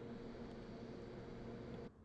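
Faint steady room tone: a low hum with light hiss, no distinct event, dropping out abruptly near the end.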